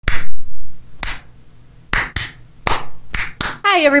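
Hand claps, about eight single claps, spaced about a second apart at first and coming quicker near the end.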